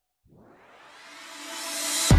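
A rising swoosh that swells steadily louder and brighter from silence, a music riser leading into the background music.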